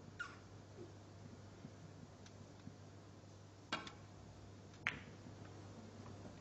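Faint snooker ball clicks in a hushed arena: a sharp double click about two-thirds of the way through, as the cue strikes the cue ball, and another sharp click about a second later. A brief high squeak that falls in pitch comes just at the start.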